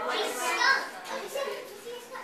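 Children's voices chattering and talking over each other in a busy room, with no clear words.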